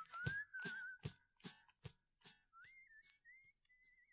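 Fade-out of a new wave rock song: a whistled melody with a wavering vibrato over a regular drum beat. The drums die away within about two seconds, and the whistling carries on faintly after them.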